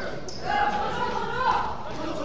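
A basketball bounces on a wooden gym floor, one sharp impact near the start, with players' voices calling out in the echoing hall.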